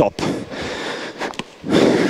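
A person breathing and making a short vocal sound without words, close to the microphone. The vocal sound is loudest near the end.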